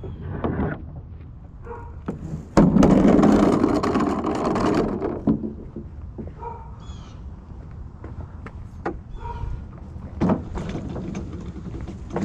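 A wheelbarrow with an orange plastic tub and a metal frame being handled on pavement: about two and a half seconds of loud rattling and scraping, then scattered knocks and clanks.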